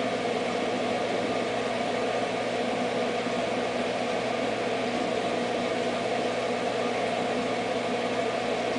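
Mag 7 magnetic-drive aquarium pump running steadily against about 8 feet of lift while water runs into the filling surge tank: a steady hum under an even rush of water. The high lift is slowing the fill.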